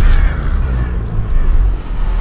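Cinematic trailer sound effect: a sudden heavy hit followed by a deep, sustained rumble.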